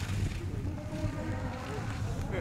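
Steady low rumble of wind on the microphone, with a faint distant voice calling out in the middle.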